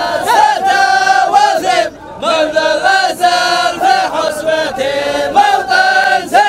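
Group of men chanting loudly together in long held phrases, a traditional Dhofari hbout chant, with a short break about two seconds in.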